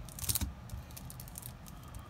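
Handling noise from a shrink-wrapped deck of trading cards being picked up: a short cluster of clicks and crinkly rustles a quarter to half a second in, then only faint background.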